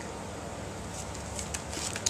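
A few faint soft taps and rustles of cardstock pages and flip-out flaps of a ring-bound mini album being handled, over a steady low room hum.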